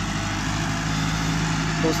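Tractor's diesel engine running steadily in the distance, an even low hum while it works a laser land leveler over the field.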